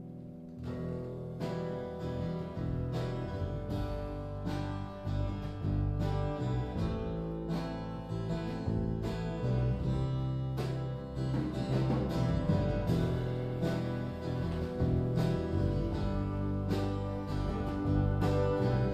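Electric guitar and acoustic guitar playing a live instrumental passage without singing, chords struck at a steady even pace. It starts soft, the strumming comes in about half a second in, and it grows gradually louder.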